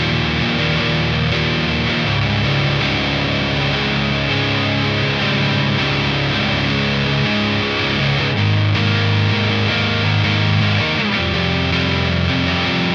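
Distorted electric guitar: a Mexican-made Fender Telecaster played through a JPTR FX Jive Reel Saturator drive pedal, giving a saturated, fuzzy tone. Chords ring out for a second or two each and change steadily.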